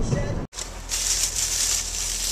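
A thin plastic shopping bag crinkling and rustling as a hand handles it. It starts suddenly about half a second in, over a low steady hum.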